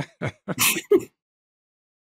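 Men laughing in a few short, separate bursts for about a second, then it cuts to silence.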